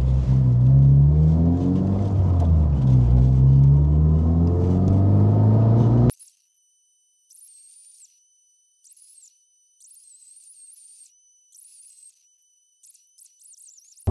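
Honda Civic Type R's turbocharged 2.0-litre four-cylinder heard from inside the cabin as the car accelerates, its pitch rising and falling as it pulls through the gears. About six seconds in, the engine sound cuts off abruptly and only faint high-pitched tones and chirps remain.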